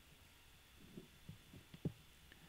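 Near silence: room tone with a few faint, short low thumps in the second half.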